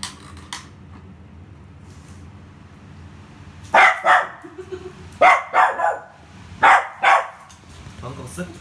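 A poodle barking at a black balloon: about seven short, sharp barks in three quick bursts, starting about halfway through.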